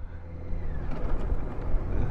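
Motorcycle running at road speed: a low rumble of engine and road noise with wind rushing over the bike-mounted microphone.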